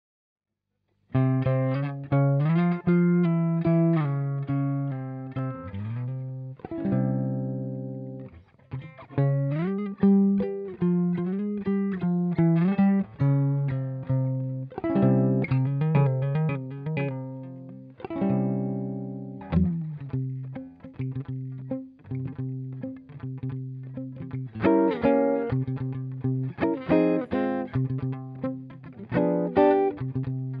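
1958 Gibson ES-125 hollow-body archtop electric guitar, its single P-90 pickup played through a 1968 Fender Princeton Reverb amp: a solo swing piece in picked chords and melody lines, starting about a second in.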